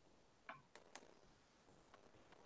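Near silence, broken by three faint clicks within the first second.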